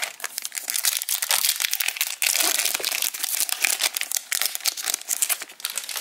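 Foil wrapper of a Topps Chrome trading-card pack crinkling and tearing as it is pulled out and opened by hand, a dense crackle throughout.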